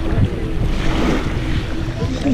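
Wind buffeting the camera microphone, a loud, uneven rumbling rush, over the wash of small sea waves on the shore.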